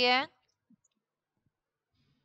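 A woman's voice finishing a short spoken phrase, cut off abruptly, then near silence with a faint tick or two.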